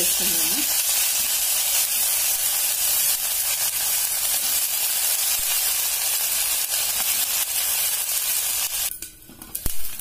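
Chopped onions, green chillies and ginger-garlic paste sizzling in hot oil in a pan, with a steady hiss as they are stirred with a wooden spatula. Near the end the sizzle drops away sharply for a moment and there is a single click.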